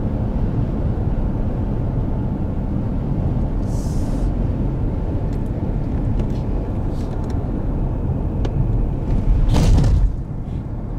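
Steady low rumble of a car's engine and tyres heard from inside the cabin while driving. There is a brief hiss about four seconds in and a louder whoosh near the end.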